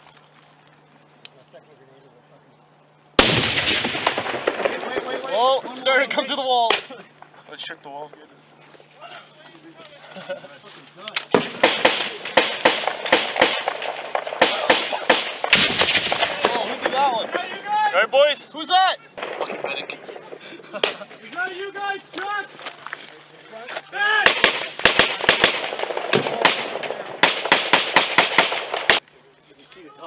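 Close-range firefight: a single loud blast about three seconds in, then rapid, irregular bursts of rifle and machine-gun fire that stop abruptly near the end, with indistinct shouting between the shots.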